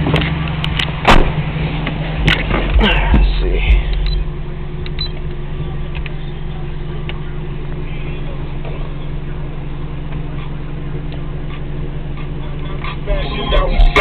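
Deep bass from a 12-inch Rockford Fosgate T2 subwoofer driven by a JL Audio 1000/1v2 amplifier, playing music and heard from inside the car's cabin. The deepest bass is strongest about three seconds in and again near the end, with a few sharp knocks in the first few seconds.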